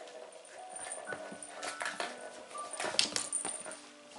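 A kitten mewing briefly over light background music, with scattered small clicks and knocks, the sharpest about three seconds in.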